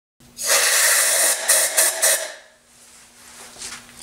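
A hollowing tool's cutter cutting inside a small wooden vessel spinning on a lathe: a loud, rough hiss for about two seconds, then it fades, leaving a faint steady hum of the running lathe.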